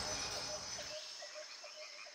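The low tail of closing music dies away into a nature soundscape. Under a second in, a frog starts calling in an even run of short croaks, about six a second, as the whole track fades down.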